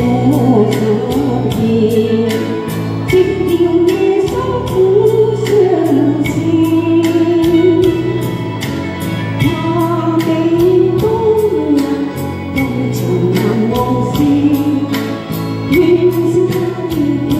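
A woman singing a slow song into a handheld microphone over accompanying music with a steady beat.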